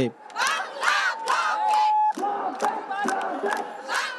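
A crowd of protesters shouting slogans together, mostly young women's voices, with rhythmic hand clapping in the second half.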